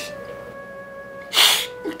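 Background music of sustained held notes. About a second and a half in, one short, sharp sobbing breath from a man who is crying.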